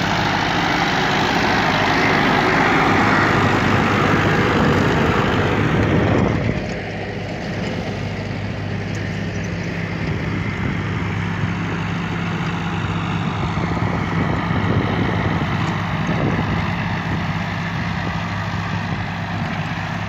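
Ford farm tractor engine running steadily while driving a 6-foot rotary brush hog mower through grass. The sound is louder and fuller for the first six seconds, then drops to a steadier, quieter hum.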